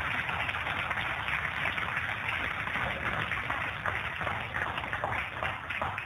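Audience applauding, the clapping thinning out into separate claps near the end.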